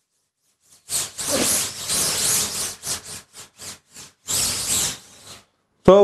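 Cloth rubbing over a stretched screen-printing mesh, wiping on mesh clog remover. One long scrubbing pass starts about a second in, then comes a run of short, quick strokes, then another longer wipe.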